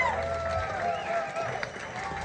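Audience voices and whoops in a club after a song ends, with no band playing, over a low steady hum.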